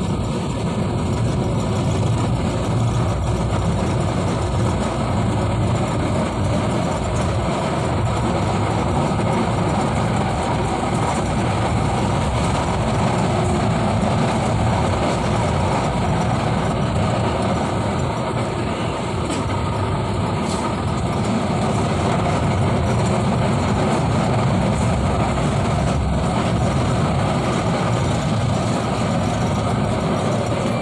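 Manila LRT Line 1 electric light-rail train running at speed, heard from inside the car: a loud, steady rumble of the train on its rails.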